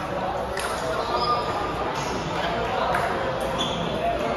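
A few sharp clicks of table tennis balls striking tables and bats, spaced a second or so apart rather than in a rally. They sound over a steady background of voices in a large, echoing hall.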